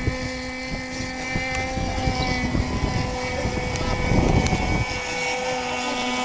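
85 cc petrol engine of a 2.5 m SU-26 model aircraft running steadily at low speed, with wind buffeting the microphone.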